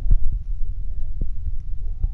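A few dull thumps of hands patting a cardboard box, over a steady low rumble.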